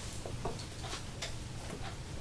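Faint, irregular small clicks and ticks, several a second, over a steady low hum.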